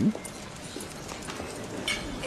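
Footsteps on a hard floor: light, irregular clicks over a low background hum.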